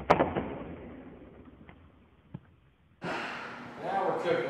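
A sudden hit that dies away over about two and a half seconds: the sound effect of an animated logo intro. About three seconds in, a fuller, louder sound comes in.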